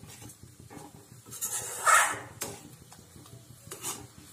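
Metal spoon stirring semolina in an aluminium kadai, with several short scrapes and knocks against the pan, the loudest about halfway through.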